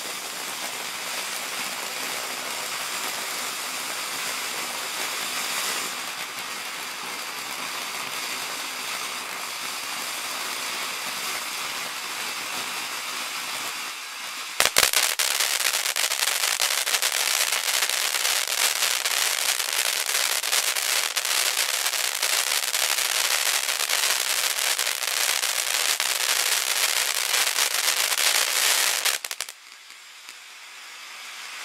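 Caliber 'Wishful Thinking' 500 g firework fountain spraying sparks with a steady hiss. About halfway through there is a sharp pop, and the fountain switches to a louder, denser crackling spray that cuts off shortly before the end.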